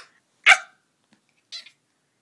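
A young child's single short, sharp shout of "ah!", about half a second in, followed by a much fainter brief sound about a second later.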